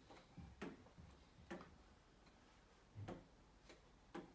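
Near silence broken by a few faint, irregular taps of a hand on a touchscreen display as the slide is scrolled.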